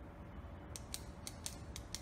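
A short mechanical-sounding intro sound effect under the channel logo: a low rumble with a faint steady hum, and six sharp clicks starting about three-quarters of a second in. It cuts off abruptly.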